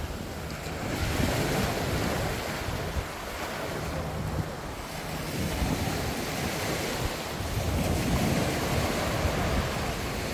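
Small sea waves breaking and washing up on a sandy beach, a steady rush that swells and eases, with wind buffeting the microphone.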